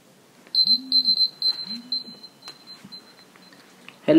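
Mobile phone ringing: a high electronic ringtone of quick repeated beeps that starts about half a second in and fades away over some three seconds, with two short low hums among the first beeps.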